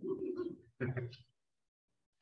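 A person laughing briefly, in two short voiced bursts within the first second or so.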